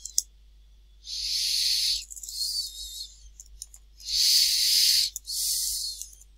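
Breathing close to the microphone: two pairs of in-and-out breaths of about a second each, airy with a faint whistle. A few soft keyboard clicks fall near the start and in the middle.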